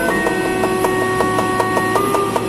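Cleaver chopping rapidly on a cutting board, mincing garlic, about six or seven chops a second, over background music with held notes.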